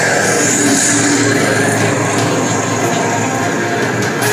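Loud, continuous action-film soundtrack music played back over speakers, with a heavy, steady low end.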